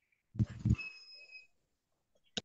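A person's voice saying a short "uh-huh" over a video-call line, followed by a brief steady high-pitched tone lasting about half a second.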